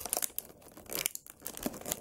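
Thin clear plastic packaging tray crinkling and crackling irregularly as hands pry an action figure out of it. The figure is held in the tray tightly.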